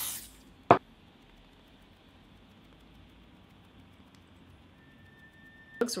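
A short hiss from an aerosol can of Dior AirFlash spray foundation, cut off just as it begins, then one sharp knock about half a second later. Quiet room tone follows.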